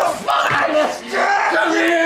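Men grunting and yelling wordlessly as they struggle, in several strained cries whose pitch slides up and down with short breaks between them; the voices are slurred by quaaludes.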